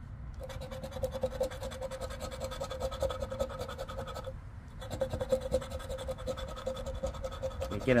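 Metal scratcher coin scraping the coating off a lottery scratch-off ticket in quick, rapid strokes, with a short pause about halfway through.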